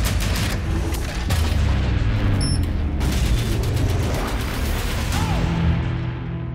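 Rapid machine-gun fire and heavy booms over a dramatic film score, easing into the score alone near the end.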